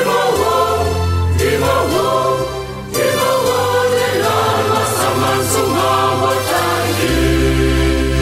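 Senegalese Catholic church choir singing a chorale in parts over low sustained bass notes, ending on a long held chord from about seven seconds in.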